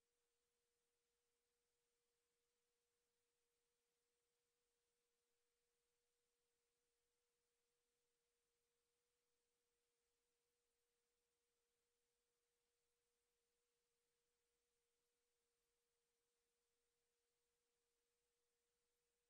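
Near silence, with only an extremely faint steady tone.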